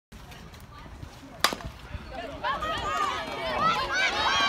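A softball bat striking the ball once with a sharp crack about a second and a half in. Then several spectators start shouting and cheering, growing louder toward the end.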